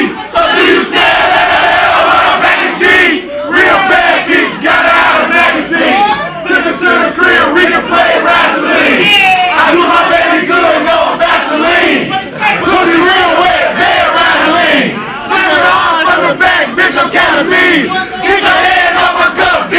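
A large crowd of many voices shouting at once, loud throughout, with brief lulls about three, twelve and fifteen seconds in.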